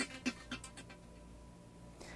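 The tail of a TV news opening theme dying away: a quick run of short, fading hits over about the first second, then only a faint steady tone.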